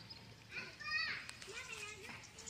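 Children's voices calling out across an open school ground: two short, high-pitched calls, the louder one about a second in.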